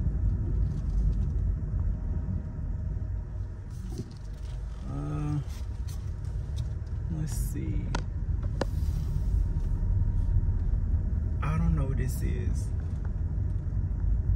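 Steady low rumble of a car driving, heard from inside the cabin, with a few brief snatches of voice now and then.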